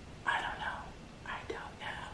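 A woman whispering a few soft words under her breath, in short unvoiced bursts.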